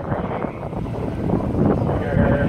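Wind buffeting a phone's microphone: a loud, irregular low rumble.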